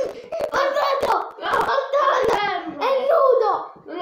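Boys shouting and yelling without clear words, with several sharp hand smacks in the first half.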